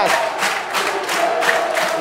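Football stadium crowd chanting in unison, one long held note over a quick rhythmic beat.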